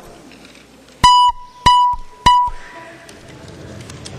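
Three short electronic beeps at one pitch, about two-thirds of a second apart, from a legislative chamber's voting-system signal as a roll-call vote is opened.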